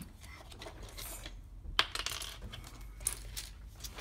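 Small plastic Lego pieces clicking and rattling against each other and the clear plastic cup they are packed in, a few scattered sharp clicks as they are handled.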